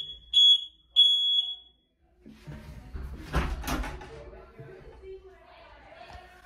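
High-pitched electronic beeps from a home elevator's beeper: three short beeps in the first second and a half, the last a little longer. Then faint rustling, with a short vocal sound about three and a half seconds in.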